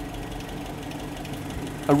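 Land Rover Series III 2.25-litre four-cylinder petrol engine idling steadily, a little slow, below its 750–800 rpm target, while the idle speed is being set on its replacement carburettor.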